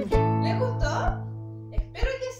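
The end of a strummed acoustic guitar song: a final chord struck at the start rings and slowly fades, with a few light beats underneath and a sharp click near the end.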